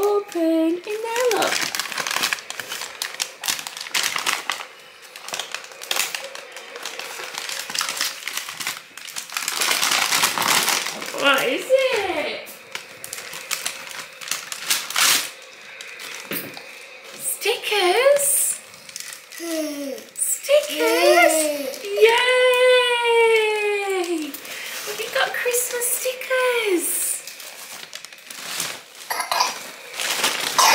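Paper wrapping crinkling and rustling as a toddler unwraps a present. In the second half come a young child's wordless vocal calls, among them one long falling call.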